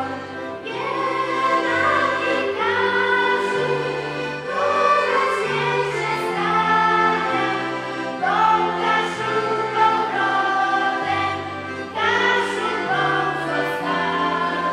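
Live song: a group of voices singing over a small folk band of accordions with guitar and bass. The bass moves in held notes that step from one to the next about every second.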